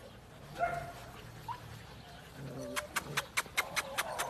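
German shepherd puppies giving short yips and whimpers. About three-quarters of the way in, a quick run of sharp clicks starts, about five a second.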